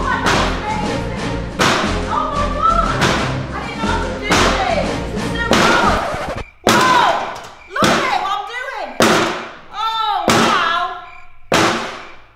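Axe blows striking a steel safe, about ten heavy thuds at roughly one-second intervals, over background music.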